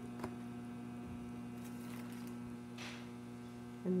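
Steady low electrical hum, with a faint click about a quarter second in.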